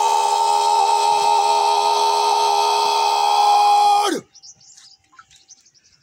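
Honour-guard soldiers shouting a drawn-out drill command in unison: one long held note, steady in pitch, that drops as it ends and cuts off about four seconds in. Faint chirps follow.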